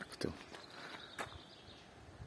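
Quiet outdoor ambience with a soft low thud just after the start and a single sharp click a little after the middle, over a faint thin high tone that holds steady for about a second.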